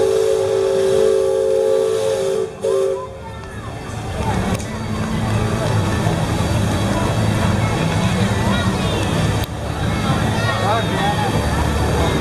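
Steam whistle of a paddle-wheel riverboat blowing a steady two-tone chord that stops abruptly about two and a half seconds in. After it come voices of onlookers over a low steady hum.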